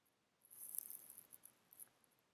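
Near silence with faint, light rustling and a few tiny ticks from about half a second in.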